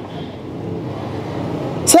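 Rumble of a road vehicle going by, growing steadily louder through the pause in talk.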